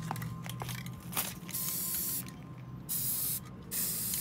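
Aerosol spray-paint can of gloss enamel hissing in three short bursts, the last running on, as paint is sprayed onto the water surface in a tub. A few light clicks come before the first burst.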